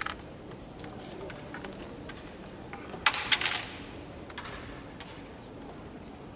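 Wooden carrom pieces clacking: a short flurry of sharp clicks about three seconds in, with a few faint taps before and after.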